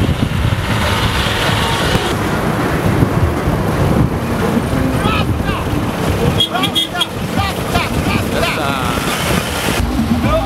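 Trucks driving past with heavy wind rumble on the microphone, and voices of people calling out over the vehicle noise.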